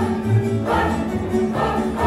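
Tamburitza orchestra playing: tamburas and guitars sustaining chords over a steady plucked bass beat, with a group of voices singing.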